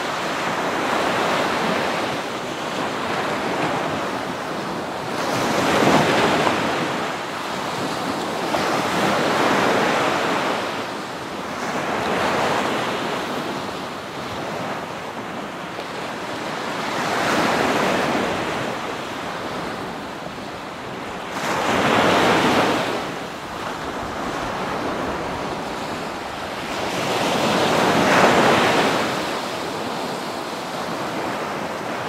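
Ocean surf: waves breaking and washing in, one surge after another every few seconds, each rising to a loud rush and falling back to a steady hiss between them.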